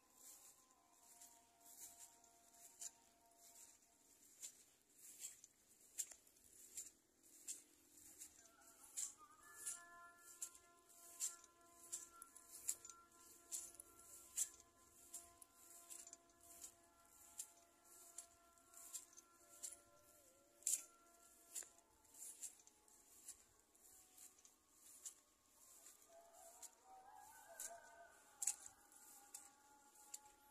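Faint footsteps swishing through wet grass at a walking pace, a little over one step a second. Faint steady tones like distant music sound under them.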